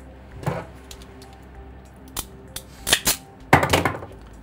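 Sharp clicks and snaps of a hand tool working a ferrule onto a stripped wire end: one about half a second in, then several in the second half and a loud quick cluster near the end.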